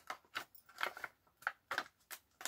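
A handful of short, faint clicks and crinkles from a flexible acetate strip springing open inside a card box and settling into its corners.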